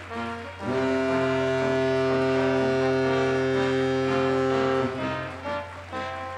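Background music with a single loud, low, horn-like tone held steady for about four seconds from just under a second in, then the music carries on with changing notes.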